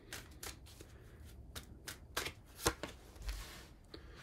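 A tarot deck being shuffled and handled by hand: a string of irregular flicks and snaps of the cards.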